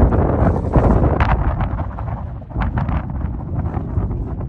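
Wind buffeting the microphone: a loud, uneven rumble with scattered short sharp crackles through it.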